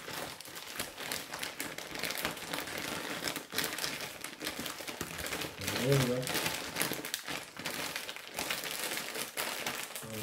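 Clear plastic mushroom grow bag crinkling continuously as it is folded and pressed down to squeeze the air out. A brief murmur of voice is heard about six seconds in.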